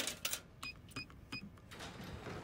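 A vending machine's number keypad being pressed: three short electronic beeps about a third of a second apart, each with a key click.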